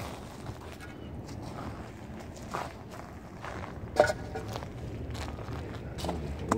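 Footsteps on charred debris and gravel, a few irregular steps, with one sharper knock about four seconds in.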